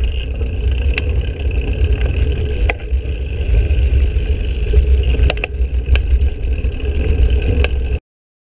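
Riding noise picked up by a bike-mounted action camera: heavy wind buffeting on the microphone and road rumble from the moving bicycle, with several sharp rattling clicks scattered through it.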